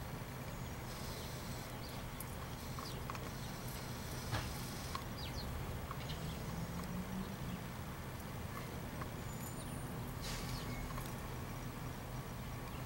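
Steady low outdoor background hum with a few sharp clicks and brief rustles; no calls from the crow.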